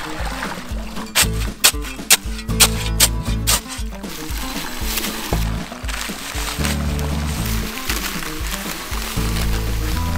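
Background music with a steady bass line, with sharp hits about twice a second in the first few seconds.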